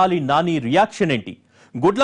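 Only speech: a man talking in Telugu like a news presenter, with a brief pause a little past halfway.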